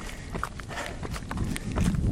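Footsteps of a runner on a dirt trail: a run of short, irregular footfalls over a low rumble of handling noise.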